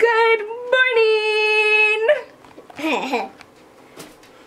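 A voice singing one long held note for about two seconds, then a short vocal burst with falling pitch, like a laugh.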